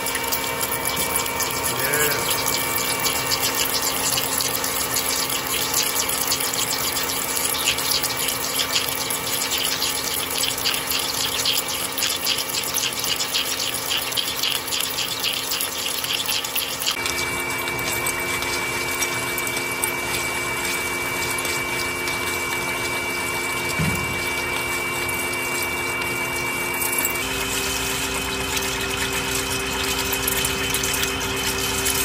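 A 50 mm indexable insert drill (U-drill) running at about 400 RPM, steadily boring into solid 4140 steel on a large bed mill. Flood coolant is spraying and steel chips are breaking off in a fine crackle. The overall sound changes abruptly just past halfway and again near the end.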